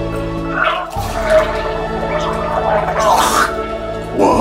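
A man's wet, gurgling gagging and retching noises from an overfull stomach, over background music.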